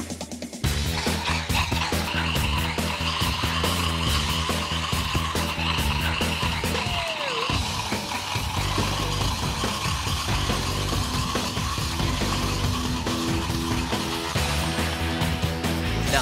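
Sugar gummy candy burning violently in a test tube of oxidizer: a steady hissing, screeching roar that starts suddenly about half a second in and dies down near the end, over a background music track.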